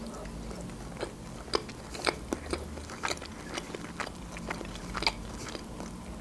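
Close-miked biting and chewing of a sesame-topped puff-pastry roll filled with tomato and cheese, an irregular run of small crisp crunches several times a second.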